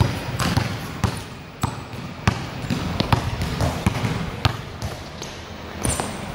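A basketball being dribbled on a hard court: a run of sharp bounces, roughly one every half-second to second, with a longer gap near the end.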